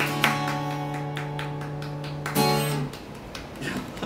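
Steel-string acoustic guitar strumming a closing chord that rings out for about two seconds. One more strum rings briefly and then dies away, leaving faint light taps.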